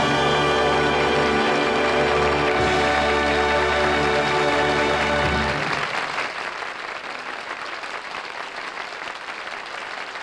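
The orchestra and singers hold a final chord, which stops about five and a half seconds in. Studio audience applause builds under it and carries on alone after the chord, fading near the end.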